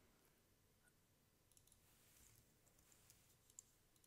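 Near silence: faint room tone with a few faint, isolated clicks, the clearest one near the end.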